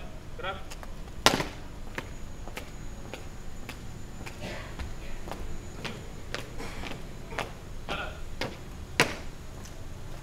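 Marching footsteps of a small group of people stepping on paving stones, with two loud sharp stamps, one about a second in and one near the end.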